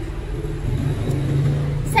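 Low engine rumble of a road vehicle passing close by, swelling through the middle and easing near the end.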